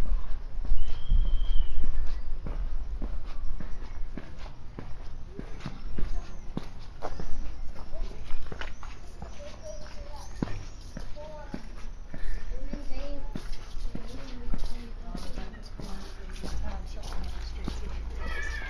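Footsteps walking on hard pavement, a run of short clicks throughout, with indistinct voices of passers-by talking in the background.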